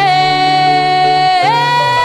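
A female pop singer holds one long sung note on the word "querré", stepping up in pitch about one and a half seconds in, over a Latin pop band with a steady bass line.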